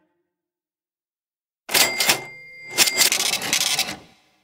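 After a near-silent pause, two loud bursts of mechanical clattering and rattling, starting a little under two seconds in, each with a brief high ringing tone.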